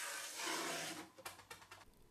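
Paper facing being peeled off a strip of foamboard along two knife cuts: a faint papery rustle that fades out about a second in.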